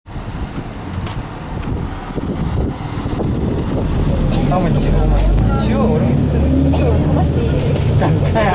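Street traffic noise for the first few seconds. About halfway in it gives way to the steady low drone of a Nissan Diesel KC-RM bus's FE6E diesel engine, heard from inside the bus, with people talking over it.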